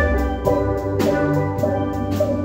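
Steel band playing: steelpans ringing out melody and chords over the low notes of the bass pans, with drums striking a steady beat about twice a second.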